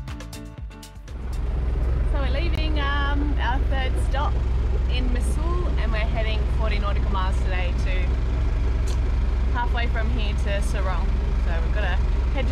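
Steady low engine hum under a woman's talking and laughter, setting in about a second in as music cuts off.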